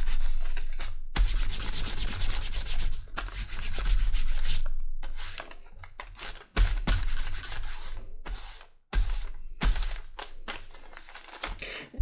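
Cloth-wrapped wooden block rubbed back and forth over basket-weave stamped leather, a dry scrubbing sound in bouts of a second or two with short pauses between them. This is block dyeing: dark brown dye is wiped onto only the raised surface of the stamped pattern.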